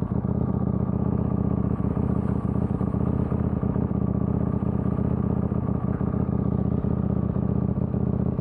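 KTM 890 Duke R's parallel-twin engine idling steadily while the bike stands still.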